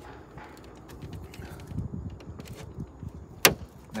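Plastic trim tool levering a VW badge off a van's plastic front grille: quiet scraping with small ticks, then one sharp click near the end as the badge starts coming off its retaining clips.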